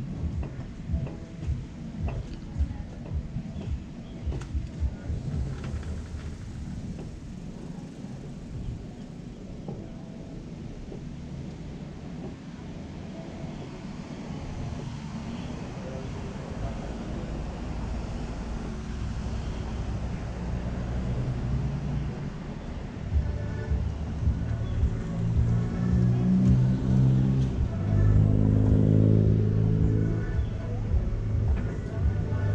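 Street traffic heard from above, with a motor vehicle's engine drone building through the second half and loudest near the end, as a large vehicle runs close by. A few light taps and clicks come in the first seconds.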